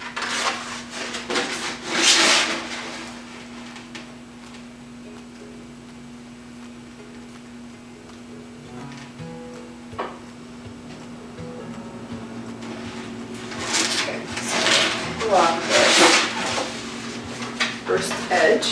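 Contact paper rustling and crackling as it is handled, its backing peeled and the sheet pressed down by hand, in two spells: one in the first few seconds and a longer one a few seconds before the end. Faint background music and a steady low hum run underneath.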